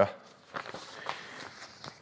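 A person's soft, irregular footsteps on a concrete workshop floor beside the workbench.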